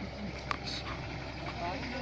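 Faint, indistinct talk from a group of men over a steady low hum, with a sharp click about half a second in.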